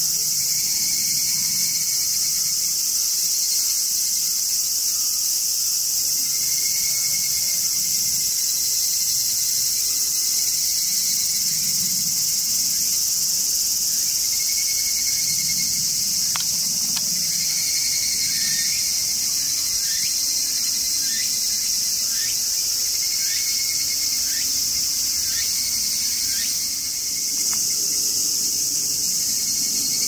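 A steady, high-pitched chorus of insects buzzing without a break. In the second half, a run of faint short chirps sounds about once a second.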